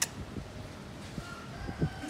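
A sharp click at the start, then a faint, drawn-out rooster crow starting about halfway through.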